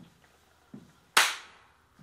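A single sharp hand clap about a second in, dying away over about half a second: a sync slate clapped to mark the start of a recorded take.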